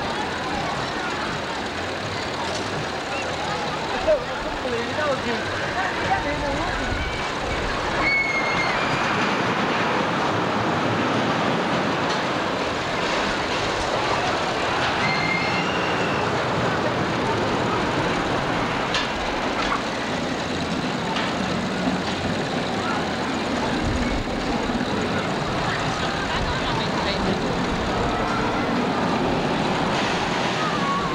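Busy outdoor crowd ambience: many voices talking at once over a steady background rumble. A few short high squeals come about 8 and 15 seconds in.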